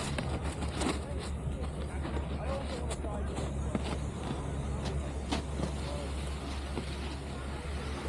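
Wind rumbling on a helmet-mounted camera's microphone as a snowboarder rides over packed snow, with scattered small clicks and scrapes and faint voices of people around.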